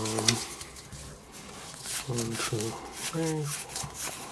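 Trading cards handled and slid through the fingers, a faint rustling with small clicks, while a man gives three short wordless murmurs.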